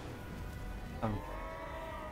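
A man's hesitant "some, um" about a second in, the "um" drawn out, over a low, steady background of the anime episode's soundtrack.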